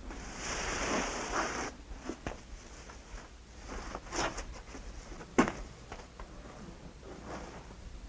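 A rustling or scraping sound for about a second and a half, then a few scattered sharp knocks or clicks, the loudest about five seconds in.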